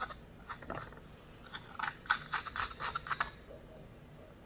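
A serrated metal blade scraping and smearing paste across a wooden board in quick short strokes, about three or four a second, stopping shortly before the end.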